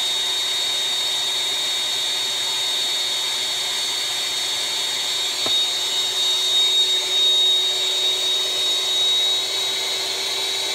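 Steady mechanical drone, like a fan or small motor running, with a high steady whine over it and a single sharp click about halfway through.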